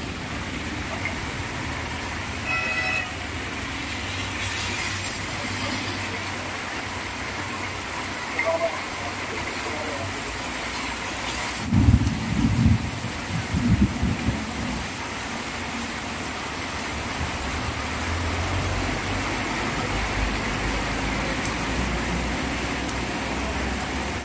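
Heavy rain falling steadily, a continuous even hiss. A short vehicle horn sounds about two and a half seconds in, and a few low thumps come around the middle.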